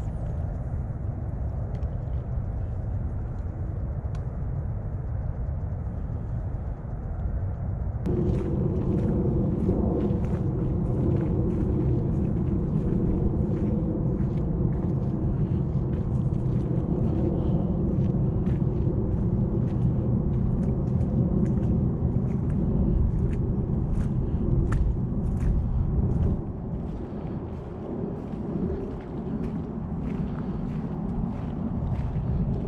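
A low, steady outdoor rumble with scattered faint crackles. About eight seconds in it grows louder and takes on a droning hum, which drops away again a few seconds before the end.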